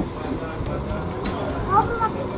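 Steady low background hum of a busy dining room with faint distant voices, and a brief murmured voice near the end.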